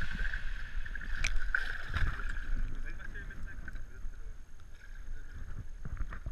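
Water sloshing and splashing around a hooked wels catfish at the surface beside a boat, heard as a low, uneven rumble through a camera housing at the waterline, with a few sharp clicks and a steady high hum running underneath.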